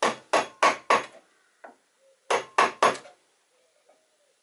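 Hammer blows on wood in two quick runs, four strikes and then three more about a second later, each a sharp knock.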